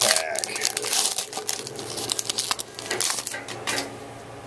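Foil wrapper of a trading card pack being torn open and crinkled by hand: a dense run of crackles that thins out and stops near the end.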